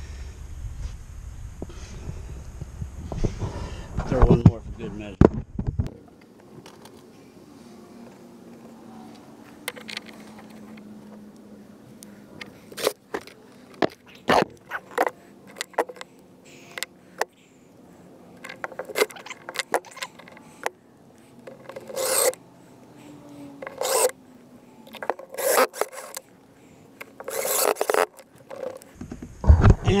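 Cordless drill/driver driving screws through metal angle brackets into a plywood floor, in several short bursts in the second half. Clicks and scraping from handling the screws and brackets come between the bursts.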